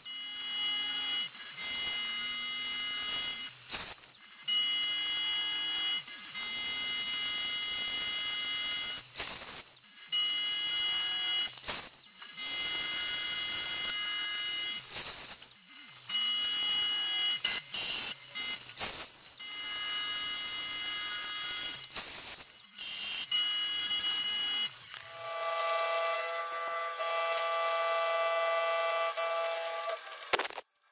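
Milling machine end mill cutting an aluminium plate: a steady high-pitched whine made of several tones, broken by short gaps every few seconds. About 25 seconds in, it changes to a different, lower set of steady tones.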